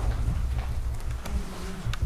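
Low, uneven rumble with a faint buzz: handling noise on the camcorder's microphone as the camera pans across the room.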